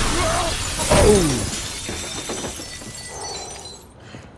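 Film sound effects of glass shattering, loudest about a second in, then fading away over the next few seconds.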